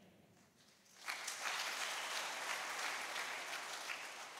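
A congregation applauding, many hands clapping together. The applause starts suddenly about a second in and begins to die away near the end.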